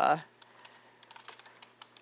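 Computer keyboard typing: a quick run of faint key clicks.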